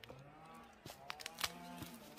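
Footsteps crunching on a dirt and stony woodland path, a few sharp steps or snaps in the middle, the loudest about a second and a half in. Behind them several faint, long, drawn-out pitched sounds overlap, each rising and falling slowly in pitch.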